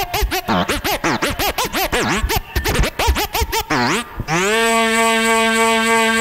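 Old-skool hardcore rave music: rapid back-and-forth scratch-style pitch sweeps for about four seconds, then a sustained synth chord glides up slightly and holds.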